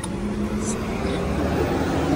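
Yamaha Ray ZR 125 scooter's 125cc single-cylinder engine idling steadily with a low hum, just after being kick-started with a single kick.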